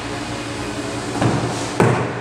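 A car's rear passenger door being opened: a dull knock as the outside handle is pulled, then a sharper, louder click of the door latch releasing near the end.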